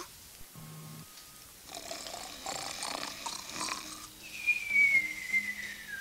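Cartoon snoring sound effect: a noisy snore in-breath, then a long whistle sliding down in pitch on the out-breath.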